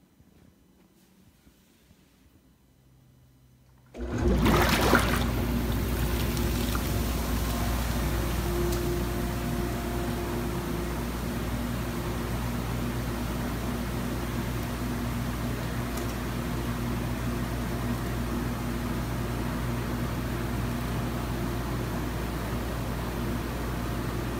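Near silence, then about four seconds in a jetted bathtub's whirlpool jets switch on with a sudden surge: the pump motor hums steadily under the rush of churning, foaming water.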